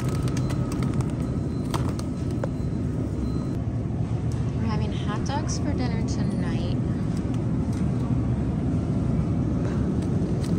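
Steady low rumble of supermarket background noise. A few light clicks of packaging being handled come in the first few seconds, and a voice is heard briefly in the middle.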